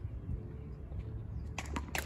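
Open-air tennis court ambience: a steady low rumble, then a few sharp taps of a tennis ball being struck or bounced in the last half second.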